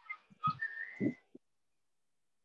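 A faint, thin whistle-like tone lasting about half a second and rising slightly in pitch, with a couple of short, low voice-like sounds.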